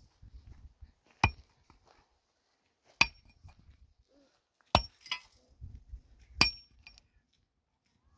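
A pick striking stony ground four times, one blow every one and a half to two seconds. Each blow is a sharp hit with a brief metallic ring from the steel head.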